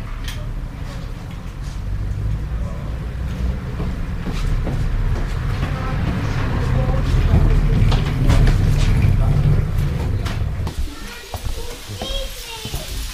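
Knocks and clatter of a bicycle being carried down stone steps, over a low vehicle rumble from the street that builds to a peak about eight seconds in and drops off shortly before the end.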